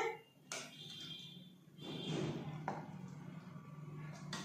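Two faint knocks of a serving spoon against a ceramic bowl as onion sabzi is spooned in, over a faint low hum.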